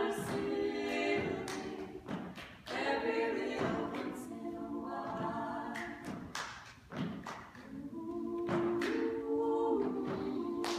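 Four women singing a cappella in close harmony, holding chords in short phrases with brief breaths between them, with thumps of body percussion (chest pats and claps) keeping the beat.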